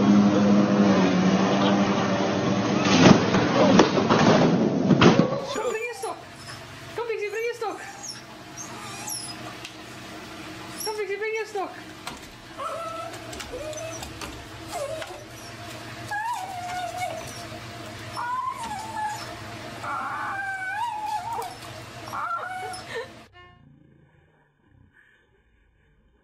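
A ride-on lawn mower's engine running, with a burst of loud knocks about three to five seconds in. After a sudden cut, a small dog whines and yelps in short rising and falling cries until the sound stops near the end.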